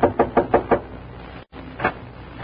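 Knocking on a door, a radio-drama sound effect: a quick run of about five raps in the first second, then one more knock near the end.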